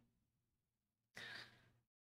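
Near silence in a pause in speech, with one faint, short breath from the man about a second in.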